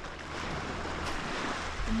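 Small lake waves washing onto a gravel shore, with a steady low rumble of wind on the microphone. A voice starts a word at the very end.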